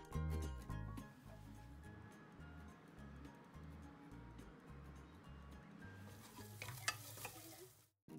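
Chicken pieces sizzling as they deep-fry in hot sunflower oil in an aluminium pot while metal tongs turn them and lift them out, with a few sharp clinks of the tongs near the end. Soft background music with a low repeating beat plays underneath.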